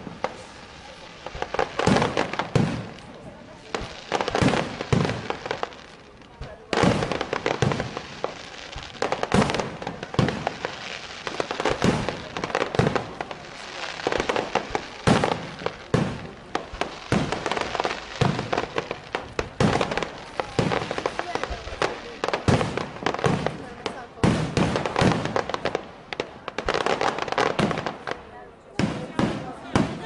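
Aerial fireworks display: shells bursting in a rapid, irregular string of bangs and crackles, several a second, with the sharpest reports coming every two to three seconds.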